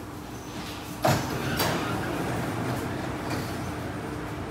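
Sliding passenger doors of a Kawasaki–CRRC Qingdao Sifang CT251 metro train opening at a station stop: a sudden clunk about a second in, then the doors running open over a steady hum.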